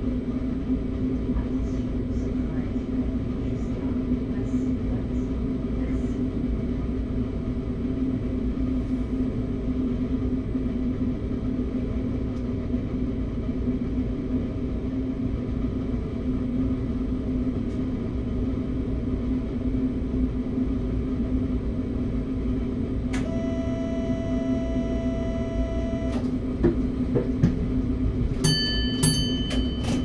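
Steady electrical hum inside the cab of an RER B commuter train standing at a platform. About 23 seconds in, a buzzing tone sounds for about three seconds, followed by a few short high beeps and clicks near the end.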